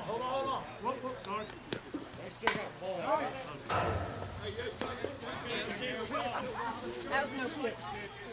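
Players and onlookers talking and calling out across a softball field, with a few sharp knocks in the first half and a duller thud about four seconds in.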